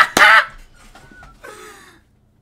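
A man's excited, hoarse yell just after the start, followed by a quieter cry with a falling pitch near the end.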